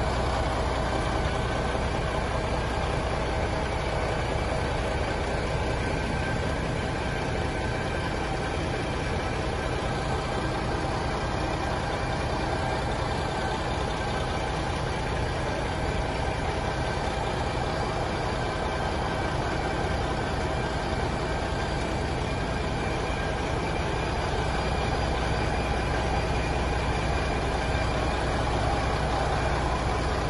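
A truck's diesel engine idling steadily, a constant low drone with a faint steady whine over it.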